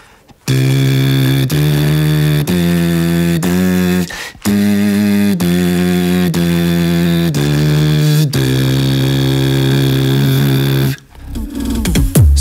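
Beatbox lip oscillation with the voice singing along: a pitched lip buzz and a sung note combined, moving up a scale in steady steps of about a second each. After a short break around four seconds in, it steps back down and ends on a long held note.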